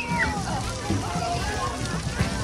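Splash-pad water jets spraying and splashing, with children shouting and chattering; a high child's shout right at the start.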